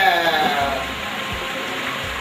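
A man's voice in one long drawn-out exclamation that falls in pitch over about a second, then a steady hiss.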